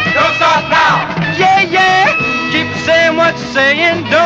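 Early-1960s rock and roll song played by a full band, with a steady dance beat and a lead line that bends and wavers in pitch between sung lines.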